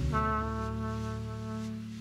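Jazz brass playing a long held note over lower sustained tones, the note slowly fading toward the end.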